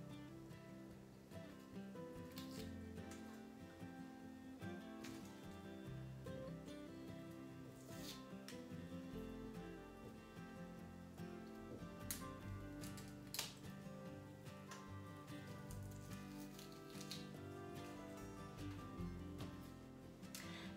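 Quiet background music, with a few short, faint crackles from papery onion skins being peeled by hand.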